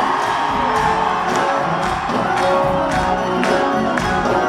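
Live band music playing loudly with a steady beat of about two strikes a second, with a large concert crowd cheering over it.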